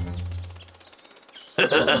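Cartoon sound effect: a sudden low thump with a low hum fading out over about a second, then a cartoon voice stammering "I… I…" near the end.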